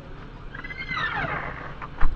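A raccoon calling: one high, wavering cry that rises and falls, lasting about a second, from about half a second in.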